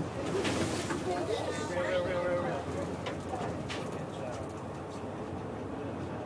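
Faint, indistinct voices rising and falling in pitch in the first couple of seconds, over a steady rush of wind and sea.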